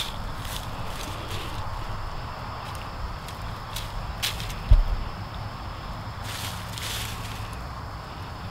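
Faint scratching and rustling of fingers pressing seeds into loose soil among dry leaves, with a few light clicks and a dull thump a little past the middle, over a steady low rumble.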